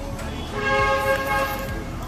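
A single held horn-like tone, loud and steady, starting about half a second in and lasting a little over a second before it stops.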